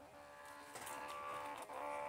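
PeriPage mini thermal printer's paper-feed motor whining steadily as it prints and feeds out a label strip, with a brief break about one and a half seconds in.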